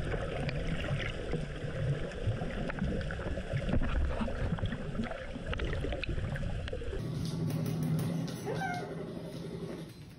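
Underwater sound picked up by a camera's microphone in the sea: a steady low rumble with scattered crackling clicks. About seven seconds in it cuts to quieter indoor sound with a few short squeaks that fall in pitch.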